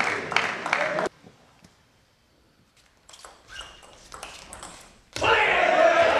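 Rhythmic crowd clapping stops abruptly about a second in. A quiet hall follows, with a few light ticks of a table tennis ball on table and bats. About five seconds in, loud crowd noise comes in suddenly.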